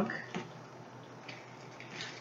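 A metal fork clicks once against a small steel pan of scrambled eggs about a third of a second in, with faint light scraping later on over a low, steady hiss.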